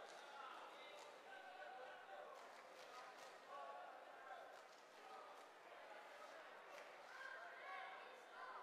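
Faint ambience of a large indoor hall: distant, indistinct voices with a few light knocks scattered through.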